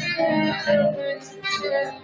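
Tenor saxophone playing a melody over backing music, with a brief drop in loudness a little after a second in.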